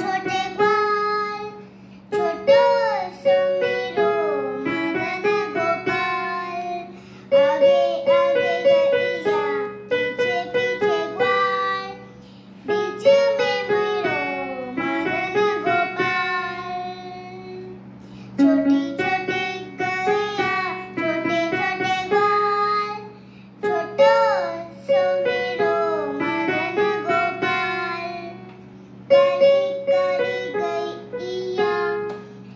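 A young child singing a Hindu devotional song (bhajan) while playing the melody on an electronic keyboard, in phrases of a few seconds separated by short breaks. A steady low hum runs underneath.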